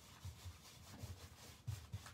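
Faint, irregular rubbing of a rag over the carved panel of a painted wooden cabinet door, wiping back antiquing gel.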